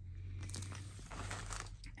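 Faint rustling and crinkling of plastic packaging being handled, with a few soft ticks, over a steady low hum.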